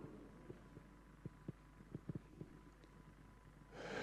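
Near silence: room tone with a faint low hum and a handful of soft, dull thumps in the first half.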